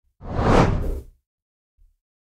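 A single whoosh transition sound effect, about a second long, swelling and then fading away.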